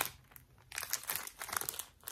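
Clear plastic packaging crinkling as packaged items are handled: a short rustle at the start, then a longer spell of irregular crinkling from under a second in until near the end.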